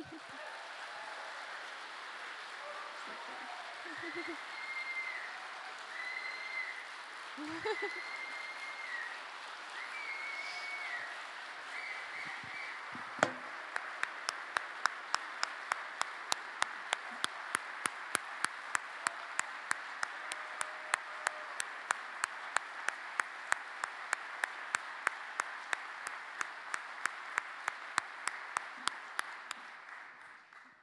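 A large theatre audience applauding, with a few short rising-and-falling high calls in the first half. About halfway in, the clapping turns into steady rhythmic clapping in unison, about two claps a second, which continues until near the end.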